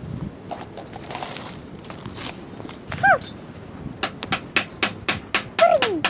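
Plastic bag rustling, then a quick run of sharp plastic clicks, about a dozen in two seconds, from a red toy camera's button being pressed. Two short falling cries come through, one midway and one near the end.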